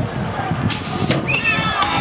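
BMX start gate dropping, heard as a short hiss of released air lasting under half a second, about three-quarters of a second in, as the riders roll off the start hill. Voices carry on around it.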